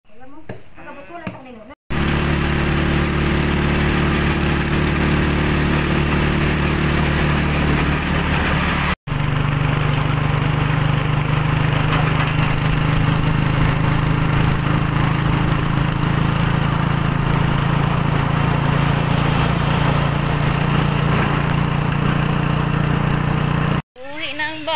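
Motorcycle tricycle engine running steadily while riding, heard loud from inside the sidecar, in two stretches with a brief break about nine seconds in. A short bit of voice comes before it at the start.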